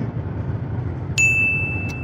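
A single bright ding sound effect, struck about a second in and ringing as one steady high tone, over the low steady road noise of a car cabin.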